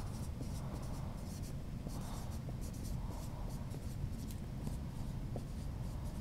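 Dry-erase marker writing on a whiteboard: a quiet run of short, high-pitched strokes in quick succession.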